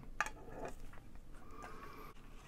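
Metal collector's tin lid being fitted back onto its tin: a light click just after the start, then faint rubbing and handling noise.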